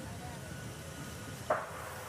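Faint steady outdoor ambience from a golf-course broadcast, with one brief sharp sound about one and a half seconds in.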